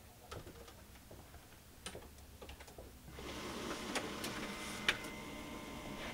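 Faint keyboard key clicks, then about three seconds in a desktop office printer starts up and runs steadily while printing a page, with a single sharp click near the five-second mark.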